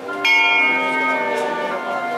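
A small bell on the front of a processional throne is struck once, sharply, about a quarter second in, and rings on as it fades. In Málaga processions this bell is the capataz's signal to the throne's bearers.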